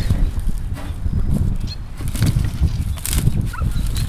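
Wind buffeting the microphone with a low, uneven rumble, and a few sharp knocks as a steel wheelbarrow is handled and pushed back upright on the grass.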